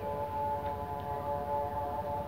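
Background music: a soft, sustained chord of several steady held tones.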